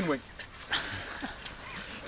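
A football kicked once, a short thud about three-quarters of a second in, over low outdoor background noise.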